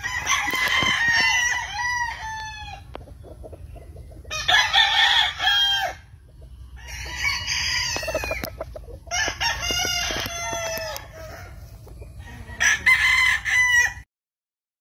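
Gamefowl roosters crowing in turn: five long crows with short pauses between them.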